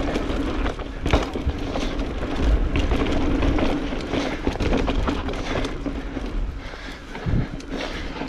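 Mountain bike descending a dry dirt singletrack: tyres rolling and scrubbing over loose dirt, with the chain and frame rattling and knocking over bumps, and a steady hum in the middle.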